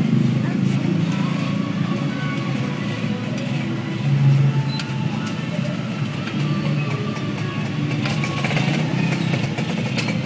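Motorcycle engine running steadily in street traffic, with people's voices mixed in.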